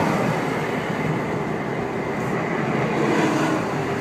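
Steady road noise from a car driving along the freeway: tyres on the pavement and wind.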